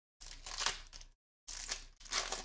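Wrapper of a Panini Prizm Fast Break card pack being torn open and crinkled by hand, in two bursts: one just under a second, then a shorter one.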